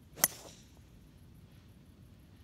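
A golf driver striking a teed golf ball: a single sharp crack about a quarter second in, with a brief ring after it.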